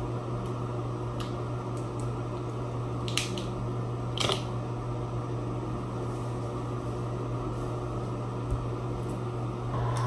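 Steady low hum of a ventilation fan in a small tiled room, with two light taps about three and four seconds in.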